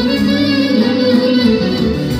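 Live Greek folk band playing dance music, with a clarinet leading.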